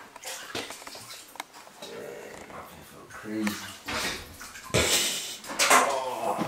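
Water sloshing and splashing in a bathtub of cold water as feet and legs move in it, with a louder splash about five seconds in and a few light knocks against the tub.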